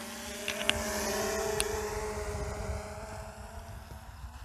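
DJI Mavic Air 2 drone's propellers whining as it flies off from a low hover. Part of the whine rises a little in pitch about half a second in, then fades as the drone draws away.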